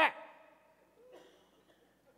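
A man imitating a dog's bark with his voice: one short, loud "rack" at the very start that trails off. Then a quiet room with a faint brief sound about a second in.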